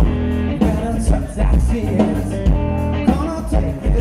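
Live rock band playing through a PA: electric guitars over a steady beat.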